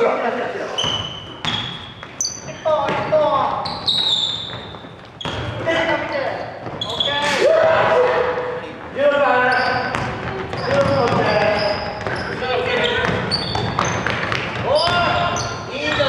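Indoor basketball game: a basketball bouncing on a wooden gym floor and sneakers squeaking in many short, high chirps as players cut and stop, mixed with players' voices calling out.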